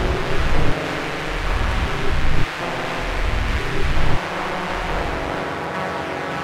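Algorithmic electroacoustic computer music: a dense noisy rumble with low swells that cut off abruptly a few times, under faint held tones.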